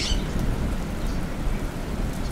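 Thunderstorm ambience: steady rain hiss with low rolling thunder.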